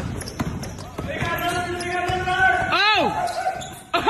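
A basketball being dribbled on an indoor gym court, with several sharp bounces in the first second and the sound echoing in the hall. Voices follow, and a short rising-and-falling squeal comes near the end.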